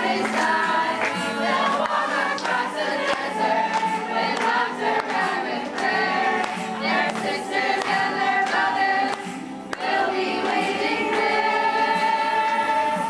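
A group of girls singing a song together, with a short break about nine and a half seconds in.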